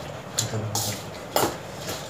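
A spoon clinking against a bowl: three short, sharp clinks.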